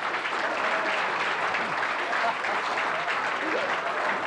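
Studio audience applauding steadily, with a few voices mixed in.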